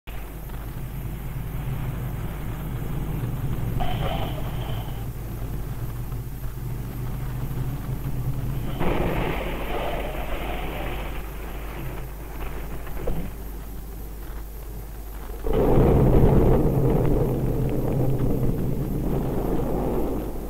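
Aircraft engine noise on an old film soundtrack, over a steady low hum, with swells of louder noise about nine seconds in and again about fifteen seconds in.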